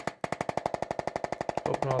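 Handheld percussive chiropractic adjusting instrument tapping rapidly on the jaw joint: a steady run of sharp clicks, about a dozen a second.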